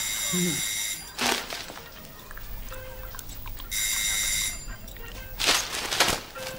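Electric doorbell ringing twice: a long ring lasting about a second at the start, then a shorter ring about four seconds in. A couple of dull thumps fall between and after the rings.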